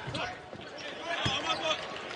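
Game sound from a basketball court: a ball bouncing on the hardwood during a drive to the basket, with scattered short clicks and squeaks over arena crowd noise.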